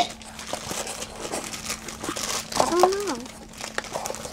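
Plastic toy packaging crinkling and rustling as it is handled and unwrapped, with a few sharp clicks, the loudest right at the start. A brief voice sound comes about two and a half seconds in.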